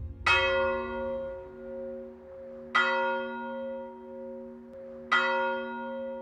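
A large bell struck three times, about two and a half seconds apart, each stroke ringing on with a wavering hum as it fades.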